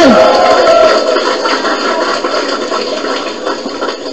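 A live audience laughing and murmuring, loudest at first and fading away over the next few seconds.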